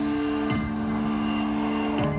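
Live rock band playing a slow held chord: a steady, sustained drone of guitar and keyboard-like tones, with no singing.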